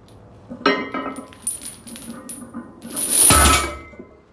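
Barbell deadlift loaded with iron plates and chains: the chains clink and rattle as the bar comes up about half a second in. About three seconds in the bar comes back down onto the rubber mat with a heavy thud and a burst of metal clatter, the loudest sound.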